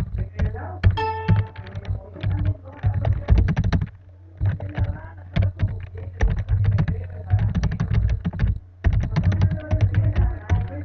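Typing on a computer keyboard: runs of rapid key clicks with brief pauses, over a low steady hum.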